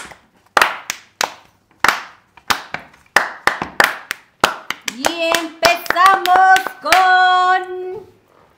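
Hand clapping in a steady beat, about three claps every two seconds. About five seconds in the claps come faster and a voice joins with long, held, sung notes.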